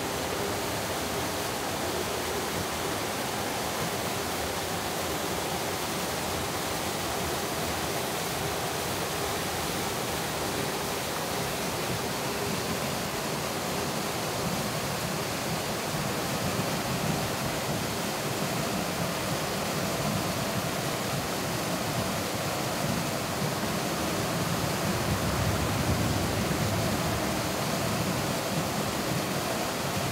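Small mountain waterfall rushing steadily into a plunge pool. It grows a little louder and deeper in the second half.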